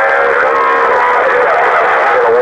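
Received radio audio from a President HR2510 transceiver's speaker: a distant station's voice, distorted and unintelligible, with wavering tones over a steady hiss, squeezed into a narrow band.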